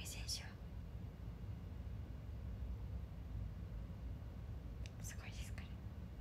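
A woman's soft whispered speech and breaths, one brief breathy burst at the start and another about five seconds in, over a steady low hum.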